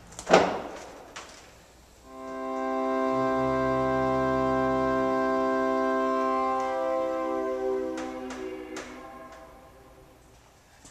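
Fritts pipe organ sounding a held chord on wind from its foot-pumped bellows, with no electric blower. After a few seconds the chord sags and fades, notes dropping out one by one as the bellows run out of air. A knock comes just before the chord and a few clicks come near the end.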